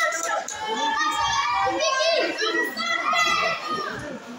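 Several children's voices shouting and calling out over one another, high-pitched and continuous, echoing in a large hall; the voices ease off near the end.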